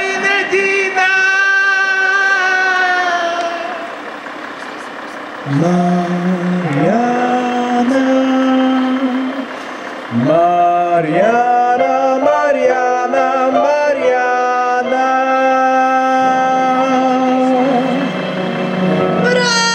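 Singing with music: a high held note fades out in the first few seconds, then after a short lull a lower voice sings two slow phrases that glide up into long held notes.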